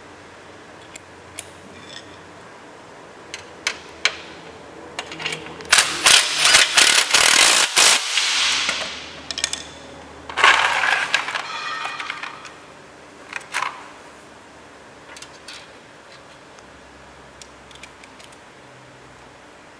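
Cordless impact driver hammering bolts into an aluminium tire-rack frame, in two bursts of about two seconds each, around six and ten seconds in. Light clicks and taps of metal parts being handled come before and between them.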